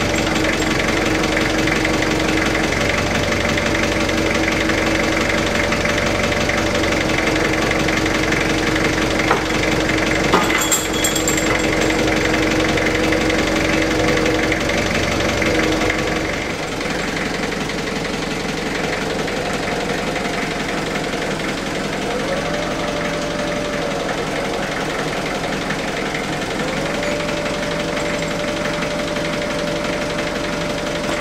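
Forklift engine running while lifting and moving the planer's infeed table on chains; the sound changes about halfway through, and later the engine speeds up twice, its pitch rising each time.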